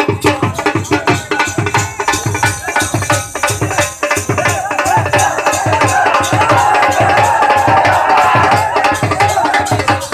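A dhol, the double-headed barrel drum, beaten with sticks in a fast, steady dance rhythm of about three bass strokes a second. Voices shout together over the drumming from about halfway until near the end.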